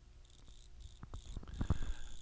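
Quiet pause in a voice-over recording: a faint steady hum with a thin high tone, and a few soft clicks that grow a little louder near the end.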